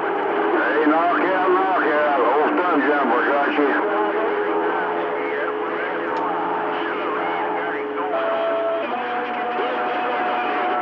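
CB radio receiving skip on channel 28: garbled voices of distant stations overlap for the first few seconds, then steady whistling tones sound over a constant hiss of static.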